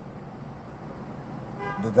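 Low steady background noise, with a short steady pitched tone near the end.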